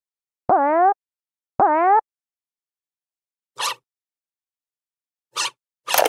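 Cartoon springy boing sound effects, twice in the first two seconds, each dipping then rising in pitch, followed later by two short hissy swishes. Electronic dance music kicks in at the very end.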